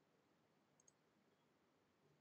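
Near silence: faint room tone, with one very faint click a little under a second in.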